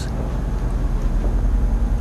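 Low, fluttering rumble of microphone handling noise from a handheld camera being swung around a room, with no distinct event.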